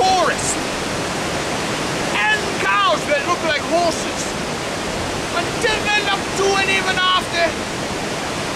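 Waterfall rushing loudly and steadily, a constant even roar of falling water.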